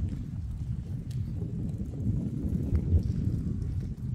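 Wind buffeting the microphone as a low, fluttering rumble, with a few faint footsteps on pavement.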